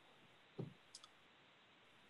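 Near silence, with a faint short sound just over half a second in and a light click about a second in.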